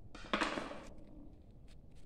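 Tissue or cotton wad wiping over an oily aluminium bus bar: one short rush of noise near the start, then faint scattered crackles.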